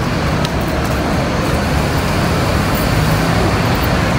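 Steady background din of road traffic and buses running.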